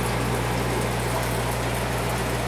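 Steady hum of an aquarium air pump with an even hiss of water and bubbles from the air-driven protein skimmer and filters it runs.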